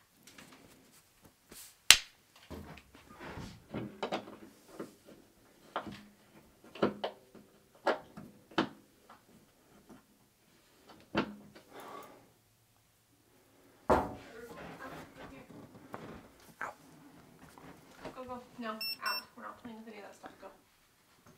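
Irregular clicks and knocks of a screwdriver and metal shelf hardware being worked by hand at a wall-mounted shelf. There is one sharp loud click about two seconds in and a heavier knock about two-thirds of the way through.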